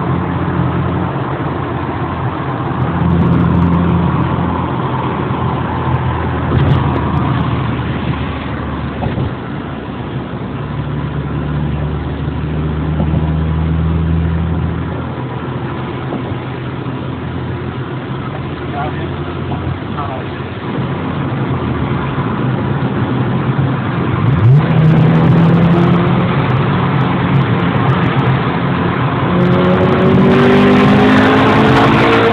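Honda Integra's four-cylinder engine heard from inside the cabin while driving, with steady road noise. About 24 seconds in the revs jump up sharply and hold higher, and near the end they climb again as the car accelerates.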